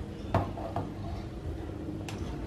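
A light knock, then a smaller one, as a metal wok is handled and set down on a gas stove top.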